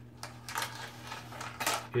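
Light metallic clicks and rattles as steel tape measures are pulled and handled against a sheet of corrugated sheet metal, a few separate ticks with the loudest near the end. A faint steady low hum runs underneath.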